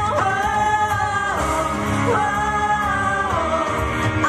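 Live pop song with a female singer holding long sung notes without words, sliding in pitch between them, over an amplified backing track with a steady beat.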